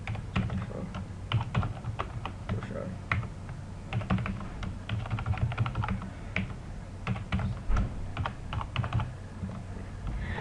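Typing on a computer keyboard: irregular flurries of keystrokes, entering values into a database table, over a steady low hum.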